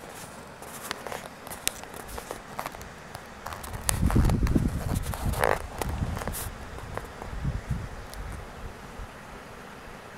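Close rustling and handling noise: scattered clicks and crackles, with a louder low rumble and scraping from about four seconds in to six and a half, as the camera is moved about at the water's edge.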